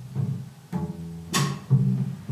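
Upright double bass plucked pizzicato, about four low notes in a slow blues line, one of them with a sharp percussive click about two-thirds of the way through.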